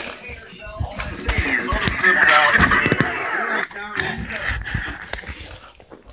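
Scuffling and a run of dull thumps as a person trips over a power cord and falls, with muffled voices and background music mixed in.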